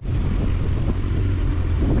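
Yamaha Fazer 800 motorcycle's inline-four engine running steadily while riding, with wind noise on the microphone.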